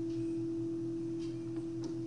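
A steady pure tone, one unchanging hum held at a single pitch, with a faint low buzz beneath it, filling the pause between speakers.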